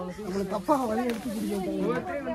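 Indistinct talking among a group of people, several voices overlapping at a moderate level.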